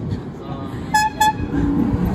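A car horn tooting twice in quick succession, two short beeps. After that comes the low rumble of the red open-top sports car's engine as it passes close by.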